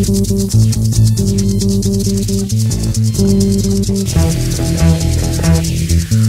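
Band music without vocals: bass guitar and guitar playing sustained chords over a fast, even, high ticking beat.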